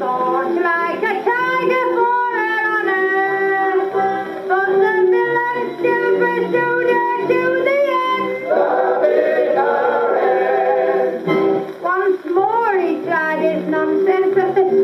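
Orthophonic Victrola Credenza acoustic gramophone playing a 78 rpm comic-song record between sung lines: band music with a swooping, sliding melody line, and a rougher, noisier stretch a little past the middle.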